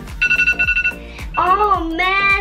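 A phone timer alarm sounds as a single steady electronic beep lasting under a second, over background music with a steady beat. About a second and a half in, a voice calls out, its pitch rising and then falling.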